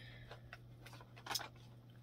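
Faint clicks and light rustling of plastic makeup compacts and a small container being handled, with a brief louder clatter a little past halfway. A low steady hum runs underneath.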